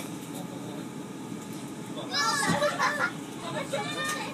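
A child's high-pitched voice calls out about two seconds in, for about a second. Under it runs the steady low rumble inside a Class 450 Desiro electric multiple unit as it pulls out of the station.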